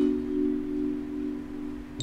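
Background score: a chime-like chord of a few low tones, struck at once and held steady for about two seconds, fading slightly.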